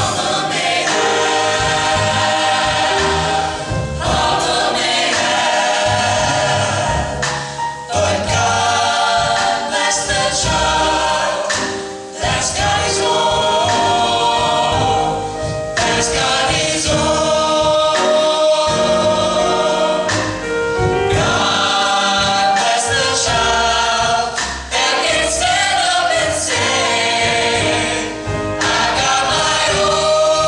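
Mixed-voice vocal jazz ensemble singing a slow arrangement in close harmony, in long phrases with brief breaks near 12 s and 25 s.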